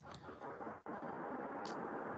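Faint, steady background noise from a video-call participant's open microphone as their line connects, with a brief faint high sound near the end.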